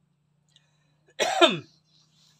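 A man coughs once, about a second in, a short cough whose voice drops in pitch as it ends.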